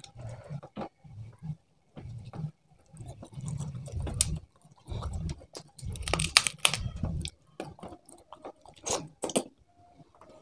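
Close-miked chewing and crunching of fried fish head, eaten by hand. Sharp crunches come through the chewing, loudest about six to seven seconds in and again near nine seconds.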